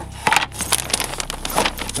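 Scattered light knocks, clicks and rustling of a hinged wooden table frame being handled and folded.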